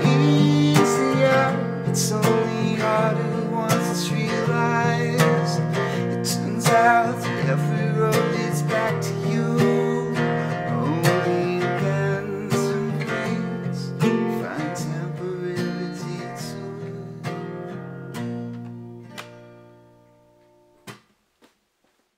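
Acoustic guitar strummed to close out a song, ending on a chord that rings and dies away over the last few seconds, followed by two short clicks.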